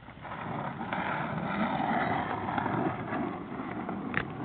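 Skateboard wheels rolling on pavement, a steady rushing noise that builds about a quarter second in and eases near the end.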